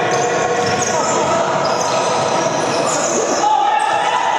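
Futsal ball being kicked and bouncing on a wooden indoor court, with players' voices echoing around a large sports hall.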